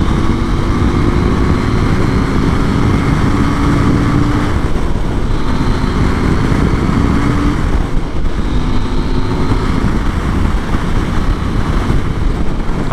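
KTM 890 Duke R's parallel-twin engine running steadily in sixth gear at motorway speed, heard under heavy wind rush on the microphone.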